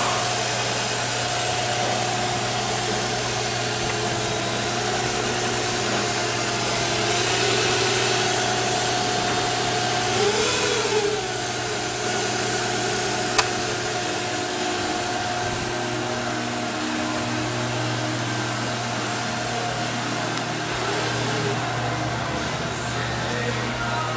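2006 Nissan Altima's 3.5-litre V6 (VQ35DE) idling steadily, with a brief rise and fall in pitch about halfway through and a single sharp click shortly after.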